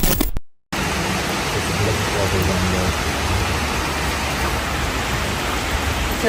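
Steady rain falling, an even hiss, which starts just under a second in after a short burst of noise from a glitch transition.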